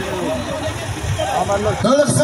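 Large crowd of men talking and calling over one another, with a steady low rumble underneath.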